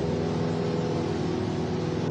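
Steady drone of an airliner's engines heard inside the passenger cabin.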